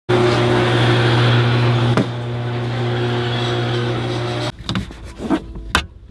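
A loud, steady machine hum with a noisy rush over it, of the kind a running engine or garage ventilation makes, with one click about two seconds in; it cuts off suddenly after about four and a half seconds. A few scattered knocks and clicks follow as the car door and interior are handled.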